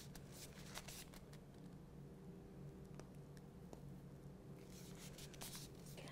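Near silence: low room hum with faint, scattered rustles and small clicks from a plastic piping bag being squeezed.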